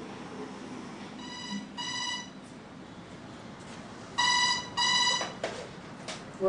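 Telephone ringing with an electronic double ring: two short rings, a pause, then two more about three seconds later, followed by a click.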